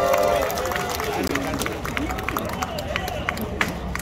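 A crowd clapping: a held vocal cheer fades about half a second in, then scattered, uneven hand claps continue with voices underneath.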